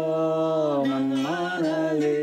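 A voice singing a long chant-like note that holds steady, slides down and back up in pitch about a second in, then carries on.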